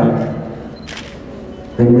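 A man speaking through a microphone and loudspeakers pauses, and his voice dies away into the hall's echo. About a second in there is one brief, sharp hissing click. The speech starts again near the end.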